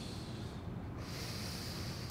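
Soft, slow breathing: one long breath fading out about half a second in, then another long breath starting about a second in.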